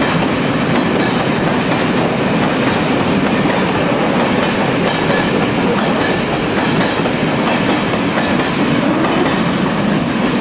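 A long train of four-axle Uacs cement silo wagons rolling past close by: a steady rumble of wheels on rail, with the clickety-clack of wheelsets over the rail joints.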